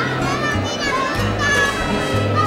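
Children's voices at play mixed with crowd chatter, over background music with a steady bass line.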